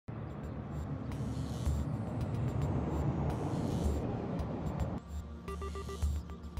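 Steady outdoor roadside noise with a heavy low rumble, like wind and traffic on the microphone. It cuts off abruptly about five seconds in, and music with short repeated tones begins.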